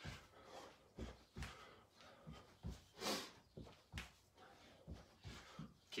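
Soft thuds of sock feet landing on a rug-covered floor during repeated in-and-out jumps, about two a second, with a sharp breath out about three seconds in.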